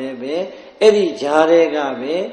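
A man's voice speaking: a Buddhist monk preaching a sermon in Burmese.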